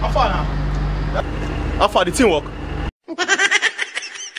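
Steady low hum of an idling vehicle engine with two short falling vocal cries over it; the hum cuts off abruptly about three seconds in, and quick high-pitched voices and laughter follow.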